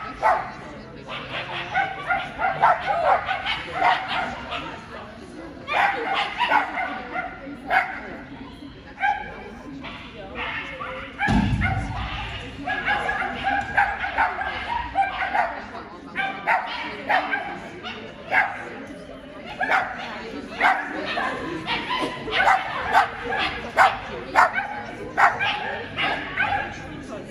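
A dog barking and yipping over and over in short, quick calls while running an agility course, with a dull thump about eleven seconds in.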